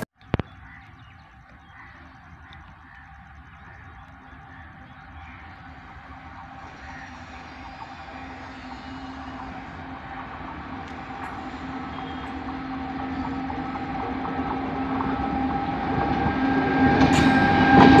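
Electric locomotive hauling a goods train, approaching along the track: a steady hum over the rumble of wheels on rails, growing steadily louder until it is loudest as the locomotive draws level near the end.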